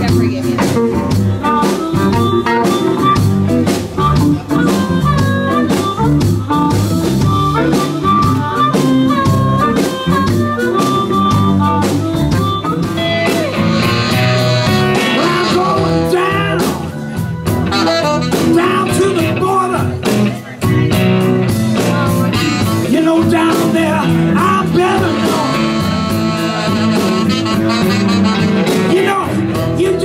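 Live electric blues band playing, with electric guitars, bass guitar and drums. The music changes to a different number about halfway through.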